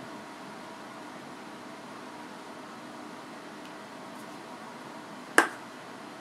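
Faint steady room hiss, then one sharp click near the end: an emptied aluminium beer can set down on a wooden tabletop.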